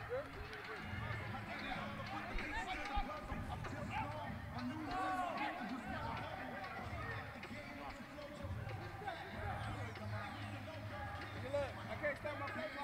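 Faint, distant voices of players and coaches calling out across a large indoor sports hall, with a low hum underneath.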